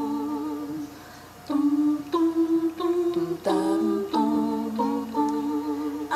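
A cappella vocal music: wordless humming of held, pitched notes that change step by step, dropping quieter about a second in and picking up again.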